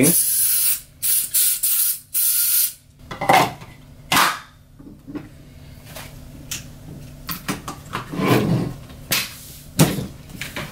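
Green gas hissing in three short bursts as it is injected from the can into an airsoft shotgun's gas reservoir. After that come scattered clicks and knocks of the reservoir and gun being handled and fitted together.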